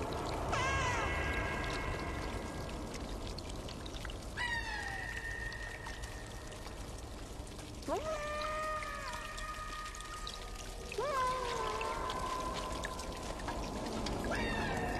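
A cat meowing four times, a few seconds apart, each call rising and then falling in pitch, over long steady held tones.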